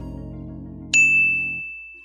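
Outro music with sustained low chords, cut by a single high, bell-like ding sound effect about a second in that rings on and fades slowly; the music stops about half a second after the ding.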